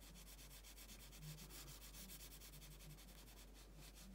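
A graphite pencil held on its side shading on paper: faint, quick back-and-forth scratching, many short strokes a second.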